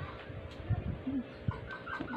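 A bird clucking a few short notes in quick succession in the second half, over a faint steady hum and a few soft low thumps.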